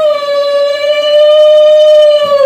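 Pressure cooker whistle, a loud steady high whistle as steam vents under pressure, coming straight after a short break from the previous whistle.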